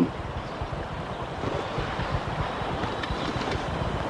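Steady, even background noise like wind, with a low rumble underneath; no speech or music.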